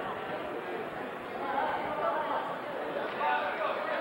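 Indistinct chatter of several spectators' voices in a school gymnasium.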